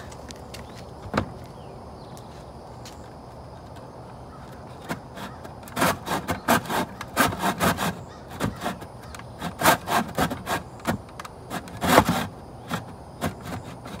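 Hand saw cutting a wooden board in a plastic mitre box, in short uneven back-and-forth strokes, several a second, that start about six seconds in after a near-still stretch. The blade keeps catching in the mitre box's yellow guide slot instead of cutting cleanly.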